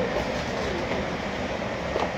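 Steady mechanical background rumble with no distinct knife strokes.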